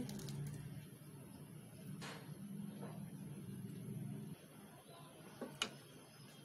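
Faint kitchen sounds as thick mango puree is poured into a pot of cooked milk and ground rice: a low steady hum that drops away about four seconds in, and two light knocks, the sharper one near the end.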